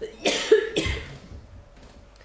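A woman coughing, a short fit of a few harsh coughs in the first second.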